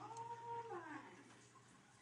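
A faint animal call, held at one pitch and then sliding down at its end, lasting about a second.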